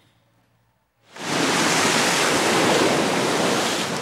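Near silence for about a second, then the steady rush of tidal-surge seawater breaking and pouring over an eroded shoreline.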